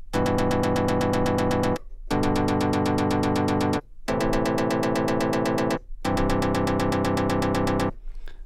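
VPS Avenger software synthesizer playing four chords in turn, about two seconds each with short gaps between them. The poly-mode arpeggiator retriggers each whole chord in fast, even pulses.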